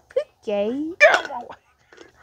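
A person's voice making wordless character sounds: a short drawn-out 'aww'-like call, then a loud, harsh, hiccup-like vocal burst about a second in.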